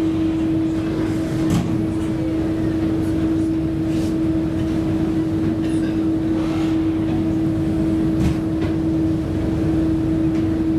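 Ship's engines running: a steady low rumble with a constant humming tone over it, and a few faint clicks.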